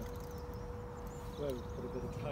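Outdoor ambience: a low rumble of wind on the microphone, a faint steady hum, and a few short high bird chirps, with a brief spoken word near the end.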